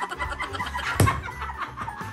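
Several women laughing hard in quick cackling pulses that sound like clucking, with a sharp clap about a second in.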